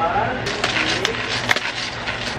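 Black pepper being dispensed from its bottle over a saucepan: a run of dry crackling with sharp clicks, lasting about a second and a half, over a steady low hum.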